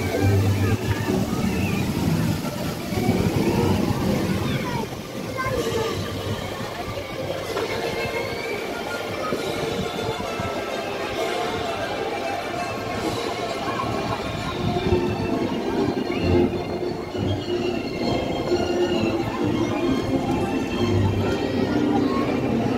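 Amusement-park background music mixed with the indistinct voices of a crowd of visitors, steady throughout.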